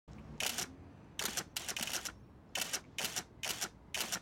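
Rapid heavy breathing from a couple in bed: short breathy gasps, about seven in four seconds.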